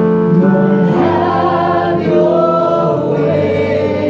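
Congregational gospel worship singing: several voices, men and women, singing together over sustained keyboard chords.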